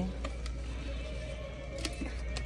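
Store ambience: faint background music with held notes over a steady low hum, and a few light clicks as a plastic light-up pumpkin decoration is handled.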